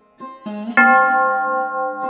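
Background music on a plucked zither: a quick run of notes, each left ringing, the last and loudest near the middle.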